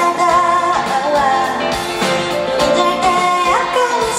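A woman singing a song live into a microphone, her voice gliding between held notes, over keyboard and band accompaniment with a steady beat.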